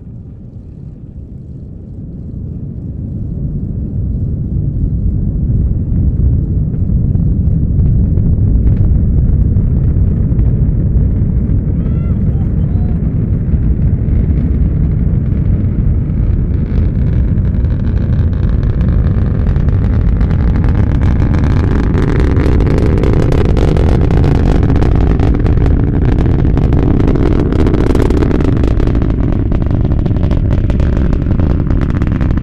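Delta IV Heavy rocket launch: a deep rumble that builds over the first few seconds, then holds loud and steady, with a crackle growing stronger from about halfway through.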